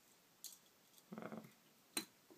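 Faint clicks from a cheap Victorinox-style red pocket knife as its tools are handled, with a sharp snap of a blade or tool near the end. A short hummed 'mm' comes about a second in.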